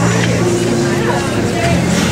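Voices of a crowd over a steady low hum that pauses briefly about one and a half seconds in.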